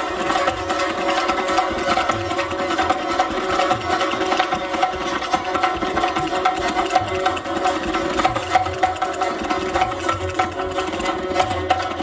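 Rajasthani folk music from a live Manganiyar ensemble: rapid, continuous percussion strokes over steady sustained tones.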